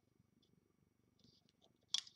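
Faint handling sounds of rubber bands being stretched and looped onto the plastic pegs of a Rainbow Loom: small soft clicks and light rubbing, with one sharper click near the end.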